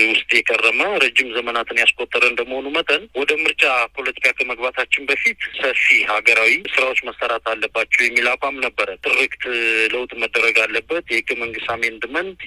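Only speech: a narrator talking without pause.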